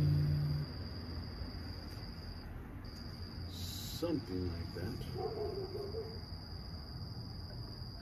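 The last Rav Vast steel tongue drum note rings out and cuts off about half a second in, leaving crickets trilling steadily at a high pitch. A faint, wavering voice-like sound comes in about four seconds in and lasts around two seconds.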